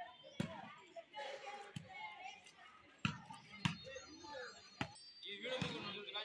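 A volleyball being struck by players' hands during a rally, about five sharp slaps a second or so apart, with players' voices and shouts around them.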